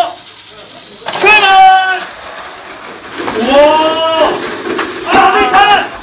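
A voice making three drawn-out, wordless calls, each held for about a second, starting about one, three and a half, and five seconds in.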